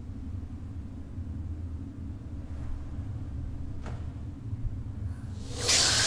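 Steady low rumble of film sound design, with a faint click about four seconds in. Near the end a loud rushing hiss breaks in suddenly.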